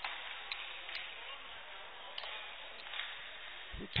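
Ice hockey rink ambience: a steady hiss of rink noise with a few sharp clicks scattered through it, like sticks and the puck striking on the ice.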